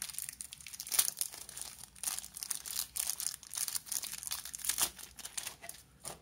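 Thin plastic wrapping crinkling and rustling in the hands as a camera battery is pulled out of it, in irregular crackles that thin out near the end.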